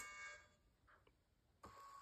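Faint electronic tones from a KaiBot coding robot during its run-program countdown: a chime fading out at the start, a near-silent gap, then a steady faint tone starting about one and a half seconds in.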